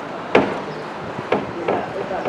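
Three short, hard knocks, the first the loudest and the next two weaker, about a second and a second and a half in.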